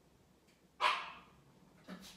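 A dog barking in the background: one sharp bark a little under a second in, then a shorter, softer one near the end.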